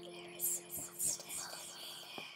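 Whispering over a low, held music drone, with two breathy whispers about half a second and a second in.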